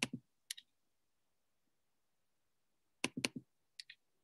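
Mostly quiet, with a single click about half a second in and a quick cluster of sharp clicks about three seconds in, then two faint ones near the end: computer clicking while trying to unmute a participant on a video call.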